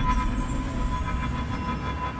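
Horror-trailer sound design: a low rumbling drone with several steady, high metallic ringing tones held over it, slowly fading.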